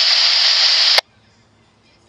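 Scanner radio's loud static hiss left after a dispatch transmission ends, cut off about a second in by a sharp squelch click, leaving a faint background.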